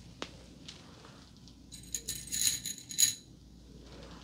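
A single sharp click just after the start, then small metal items jingling and clinking together for about a second and a half near the middle, as they are handled.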